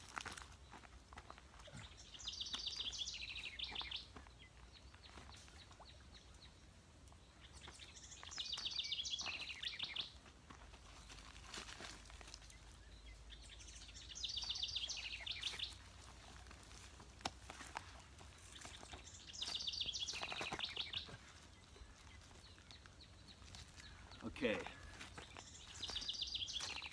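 A songbird repeating a high, rapidly trilled song four times, each about a second and a half long and roughly six seconds apart, over a low rumble of wind and outdoor noise.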